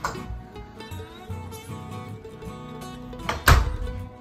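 Background guitar music, with one loud thunk about three and a half seconds in: the door shutting against its frame, pulled closed by its new spring hinge.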